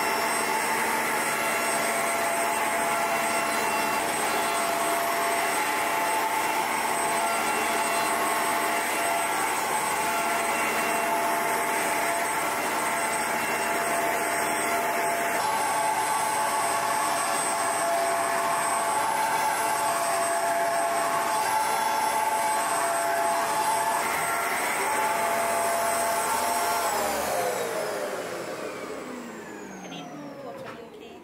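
Bissell Pet Pro upright carpet washer running steadily with a constant motor whine. Near the end it is switched off, and the whine falls in pitch and fades as the motor winds down.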